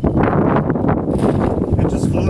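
Gusty wind buffeting the microphone, a loud low rumbling rush.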